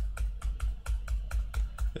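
Rapid, evenly spaced key taps on a laptop keyboard, about four to five a second, each a sharp click with a low thud: the page-refresh key being hit again and again.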